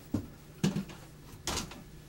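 Three dull knocks and bumps from a person shifting in and getting up from a seat, furniture and body moving against it.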